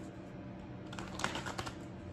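Steady fan hum of a small space heater blowing, with a quick run of light clicks about a second in.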